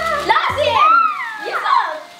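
Children's voices calling out excitedly, their pitch sliding high and low.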